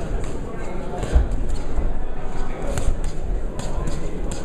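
Crowd chatter in a boxing hall, with scattered sharp slaps and low thuds of gloves landing and feet moving on the ring canvas.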